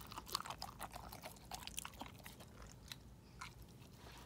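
A black golden retriever mix puppy eating kibble mixed with shredded chicken from a bowl: quiet, irregular chewing and crunching clicks, busiest in the first two seconds.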